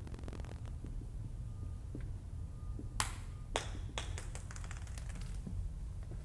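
Dry-erase marker on a whiteboard: a faint thin squeak, then a few sharp taps and clicks, three of them close together about three to four seconds in, over a steady low room hum.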